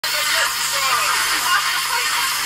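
A video's soundtrack playing through a laptop's small speakers: thin and tinny under a steady hiss, with faint voices in it.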